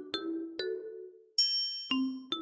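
Short TV station-ident jingle: a run of struck, bell-like notes about every half second, with a bright high chime about a second and a half in.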